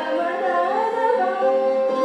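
Female Hindustani classical vocalist singing a slow, gliding phrase of raga Bhimpalasi over a steady drone.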